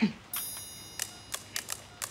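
A short, high-pitched bell-like ring lasting about half a second, followed by a few light clicks.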